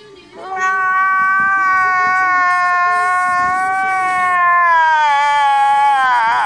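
A man's loud, drawn-out crying wail, starting about half a second in, held on one pitch for about five seconds and sagging lower near the end.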